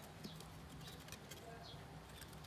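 Faint, irregular light ticking and scratching of a small animal's claws stepping across cardboard.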